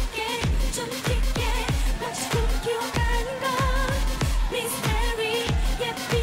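K-pop dance song: female voices singing over a steady, punchy kick-drum beat of about two beats a second.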